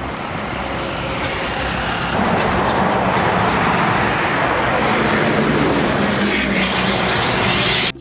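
Road traffic on a highway: heavy trucks' engines and tyres passing, a steady rush of road noise that gets louder about two seconds in.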